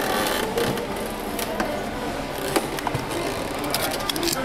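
Steady shop background noise with scattered light clicks and taps. Near the end they come closer together as a hand handles a toy set in a clear plastic zip bag and its card tag.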